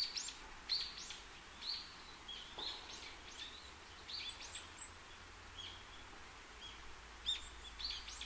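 Faint birds chirping, short high calls every half second to a second, over a low steady background hum.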